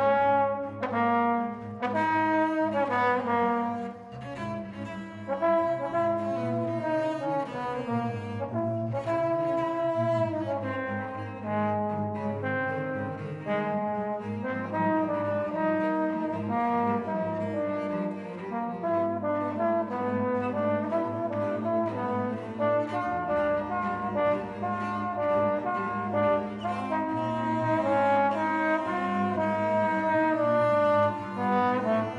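Trombone playing a slow line of held notes that shift in pitch about once a second, over sustained low bowed notes from cello and double bass, in a contemporary chamber trio.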